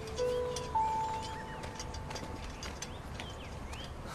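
Drama background music of long held notes: a lower note at the start, then a higher note entering just under a second in and slowly fading.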